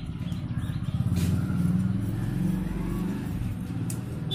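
Low, rippling engine rumble of a passing motor vehicle, swelling about a second in and easing near the end, louder than the scissors. Under it, large tailoring scissors cut through cotton fabric, with one crisp snip about a second in.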